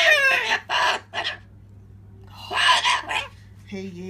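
Pet cockatoo talking in a harsh, screechy voice, squawking "Shoo, ya bastard!" at birds outside. Loud calls come at the start and again about two and a half seconds in, with short squawks between.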